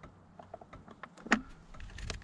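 Light, scattered clicks and taps of hands handling the plastic top of a truck battery, with one sharper click past the middle.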